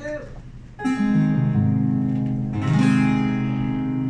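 Acoustic guitar strumming ringing chords, starting about a second in, with chord changes as it plays the introduction of a song.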